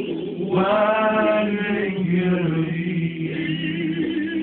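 Elderly man singing along to backing music, holding long drawn-out notes with no clear words, the last one wavering.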